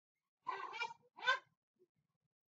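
Two short animal calls in quick succession, the second briefer and rising then falling in pitch.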